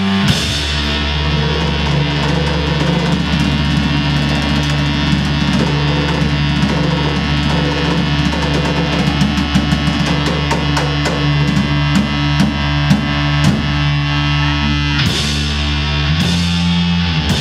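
Live heavy instrumental rock from a band: an electric guitar holding low, sustained chords over a drum kit. The drum strokes come thick and fast through the middle of the stretch.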